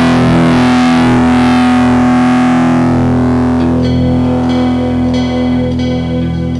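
Distorted electric guitar through a Boss ME-30 multi-effects unit, recorded on a cassette 4-track: a held chord rings on and slowly fades, then single picked notes begin about three and a half seconds in.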